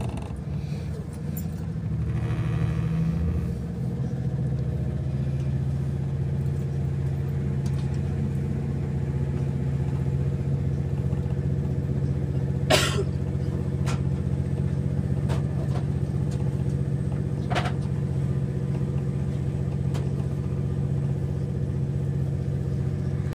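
A passenger train heard from inside the carriage as it pulls away: a steady low drone from its engine and running gear, with two sharp knocks about halfway through and again a few seconds later.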